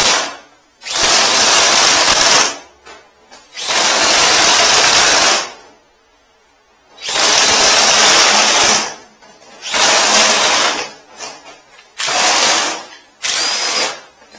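Electric drain-cleaning machine spinning a spring cable inside its guide hose while it is worked into a blocked drain, run in about seven short bursts of one to two seconds with brief pauses between.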